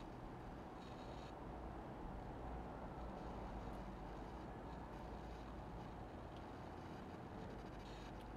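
Quiet, steady low hum and rumble of background noise, with faint light clicks of small plastic kit parts being handled and pushed together.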